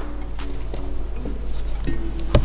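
Background music with short held notes over a steady low bass, and light regular ticks.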